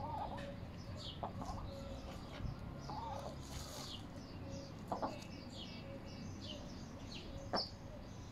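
Birds calling: many short, high, falling chirps, with a couple of low clucking calls. A few sharp taps, the loudest near the end.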